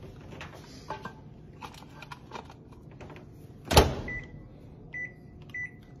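A microwave oven door shut with one loud clack, followed by three short, high keypad beeps as the cooking time is entered.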